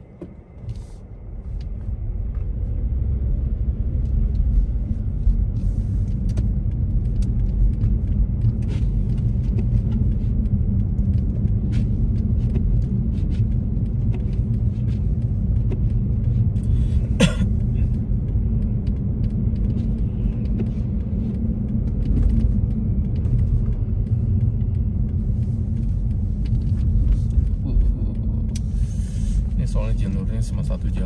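Car cabin road noise while driving on snowy, slushy city streets: a steady low rumble of engine and tyres that builds over the first few seconds as the car pulls away, with a single sharp click about two-thirds of the way through.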